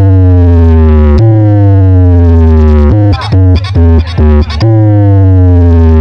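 Electronic competition DJ track played very loud through a large outdoor sound system. Heavy steady bass sits under a siren-like synth tone that slides down in pitch and restarts three times, broken by a chopped, stuttering passage about halfway through.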